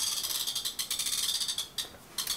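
A fast, light, ratchet-like clicking that runs on and then stops about a second and a half in.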